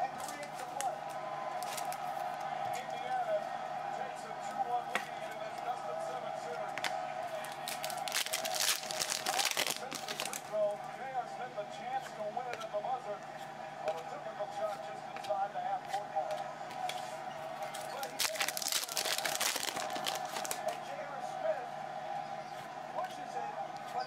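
Plastic card sleeves and foil pack wrapping crinkling as trading cards are handled. The crinkling comes in two longer bursts, about a third of the way in and again past the three-quarter mark, with small crackles between them, over a steady background murmur of voices.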